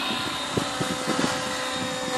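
Align T-Rex 600E Pro electric RC helicopter in flight: a steady high whine from the electric motor and drivetrain over the hiss of the spinning rotor blades.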